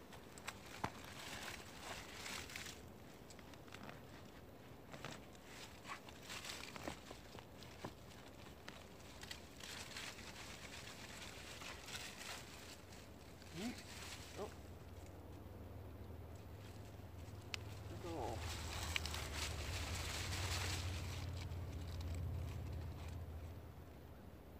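Hands digging in soil and pulling up dry Jerusalem artichoke stalks: faint rustling, scraping and small clicks. In the second half a low rumble builds, then fades near the end.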